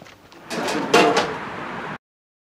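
Plastic crates and bins being handled: about half a second in, a loud scraping, rattling noise starts, with squeaky rubbing and a sharp knock about a second in, then cuts off suddenly.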